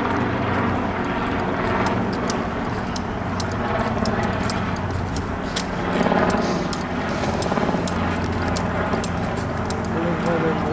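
Ford police SUV's engine idling steadily, its hum growing a little stronger near the end, with footsteps on asphalt ticking about twice a second.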